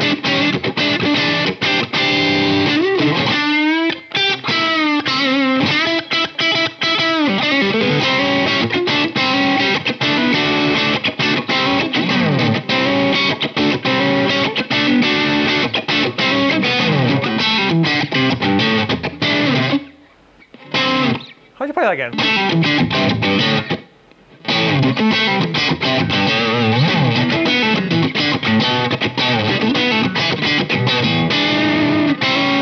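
Fender American Vintage II 1951 Telecaster on its single-coil neck pickup, played through an overdriven amp: a dirty blues-rock lead with string bends and vibrato. The playing stops briefly twice about two-thirds of the way through.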